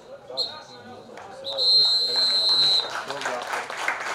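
Referee's whistle giving the final whistle: a short blast, then one long blast of over a second, ending the match. Scattered clapping follows at once.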